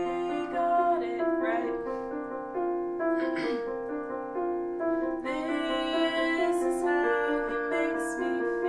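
Yamaha digital piano playing held chords in a slow song, with a woman singing over it.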